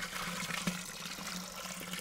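Cooking oil poured in a steady stream from a bottle into a pot, a long continuous pour of about a liter.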